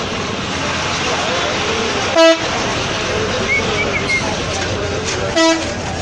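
Vehicle horn sounding two short toots about three seconds apart, the loudest sounds here, over steady street noise and crowd chatter.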